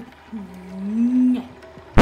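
A woman's drawn-out hesitating 'mmm', dipping and then rising in pitch, about a second long. Right at the end a sudden loud rasping noise starts.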